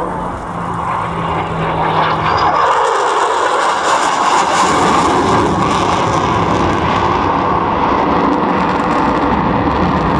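F-35A fighter's single F135 turbofan jet engine passing overhead: a low steady hum for the first two seconds gives way to a loud jet roar that builds from about two seconds in and stays loud.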